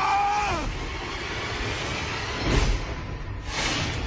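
Film sound effects of a cave mouth collapsing: the end of a shout, then a rumble of falling rock with a deep boom about two and a half seconds in and a burst of hiss near the end.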